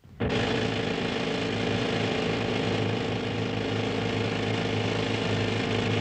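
Pneumatic rock drill running steadily in a gold mine, a loud continuous hammering with a steady hum, cutting in abruptly just after the start.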